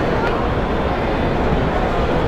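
Steady loud din of a large exhibit hall: a low rumble of room noise with faint, indistinct voices of people around.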